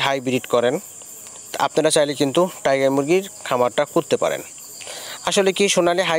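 A flock of hens in a crowded poultry shed calling, about five drawn-out pitched calls a second or so apart, over a steady high insect-like chirr.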